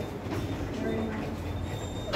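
Low murmur of voices over steady room noise in a large hall.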